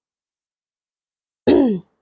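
Silence, then about a second and a half in, one brief vocal sound from a woman, falling in pitch.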